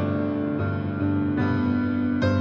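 Slow keyboard music: sustained chords, changing to a new chord twice.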